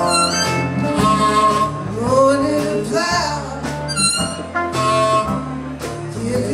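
Live blues band playing: a harmonica cupped against a vocal microphone plays bent notes over electric guitar, bass guitar and drums.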